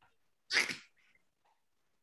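A single short, sharp breathy burst from a person close to the microphone, about half a second in, with near quiet around it.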